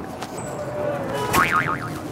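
Background street chatter from a crowd. About a second and a half in, a sharp click is followed by a short tone that wobbles up and down like a boing. It is the loudest thing heard.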